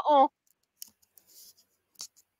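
A person's voice trailing off in the first quarter second, then quiet with a few faint clicks.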